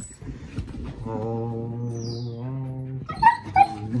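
A dog yips twice in quick succession near the end. Before the yips, a low voice holds one long steady note for about two seconds, and a faint high falling whine comes just after the middle.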